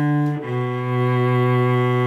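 Solo cello bowed in a slow melody: one note changes about half a second in to a lower note that is held long and steady.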